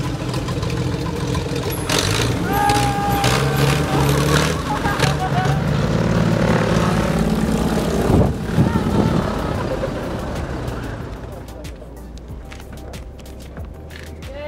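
Pitts aerobatic biplane's piston engine and propeller running as it taxis in, with a steady drone that dies away after about ten seconds as the engine is shut down.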